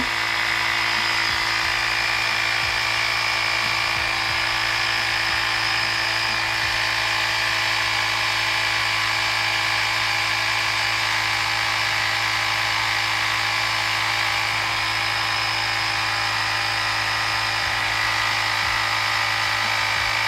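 A Carsun cordless tyre inflator runs steadily, pumping up a bicycle tyre, with a constant motor-driven drone that holds the same level throughout.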